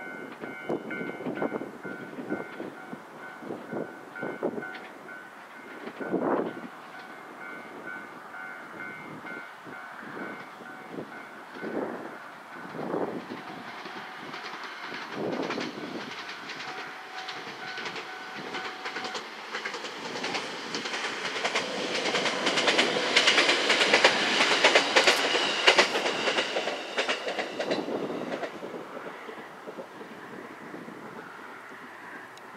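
E127 series two-car electric train running past, its wheels rumbling and clattering over the rail joints. It grows louder through the second half, is loudest a few seconds before the end, then fades.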